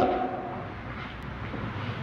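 Steady hiss and faint low hum of an old lecture recording's background noise, with the tail of the speaker's last word fading out at the start.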